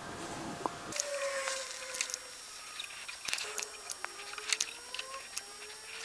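Soldering a wire terminal with flux: faint crackles and small ticks as the hot soldering iron works the flux-coated joint, with a few faint gliding tones in the background.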